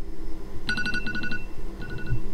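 Smartphone alarm going off: a short pattern of electronic tones that starts about two-thirds of a second in and repeats about a second later.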